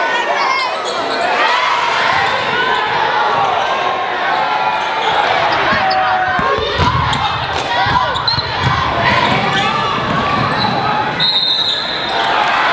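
Live basketball game sound in a large gym: a ball being dribbled on the hardwood court under the shouts and chatter of players and crowd.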